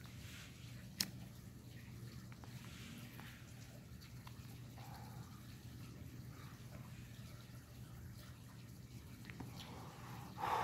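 A cigarette lighter struck once about a second in, a single sharp click, then faint low background noise while the cigarette is lit and drawn on.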